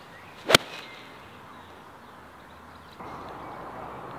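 A golf iron striking the ball: one sharp crack about half a second in, over faint outdoor background.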